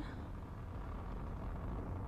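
Steady low rumble of a Falcon 9 rocket's nine Merlin first-stage engines during ascent, with most of its weight in the bass.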